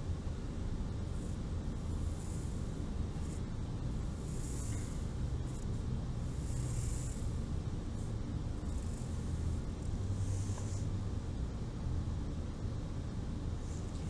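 Felt-tip Sharpie marker drawn across paper in several soft swishing strokes, each about a second long, over a steady low background rumble.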